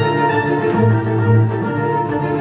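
Recorded orchestral ballet music led by bowed strings, playing held notes over a repeating low bass note.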